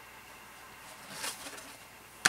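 Faint rustle of a vinyl record and its paper inner sleeve being handled, about a second in, over quiet room tone.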